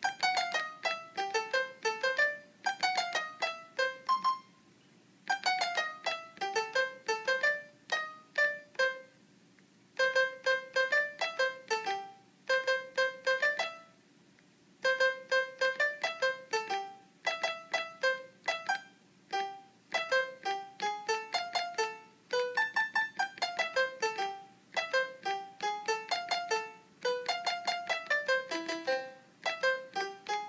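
A melody of single piano notes from a GarageBand software instrument, triggered by the push-button keys of a homemade Arduino MIDI keyboard. Each note starts sharply and fades, and the phrases break off briefly about 4, 9 and 14 seconds in.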